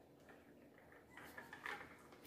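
Near silence, with a few faint plastic clicks and rustles in the second half as a small plastic bottle container is drawn out of a touchless sanitizer sprayer's housing.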